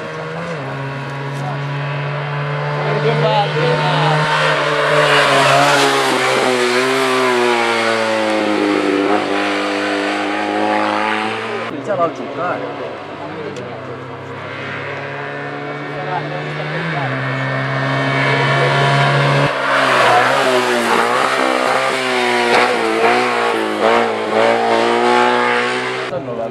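Small classic Fiat 500-style slalom race cars revving hard through the course, the engine note climbing and falling again and again as they accelerate and lift between gates. One car passes, then, after a short lull about halfway through, a second car's run follows.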